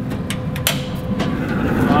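Metal latch and lid of a Traeger portable pellet grill clicking open, one sharp click about two-thirds of a second in with lighter ticks before it, over a steady low hum.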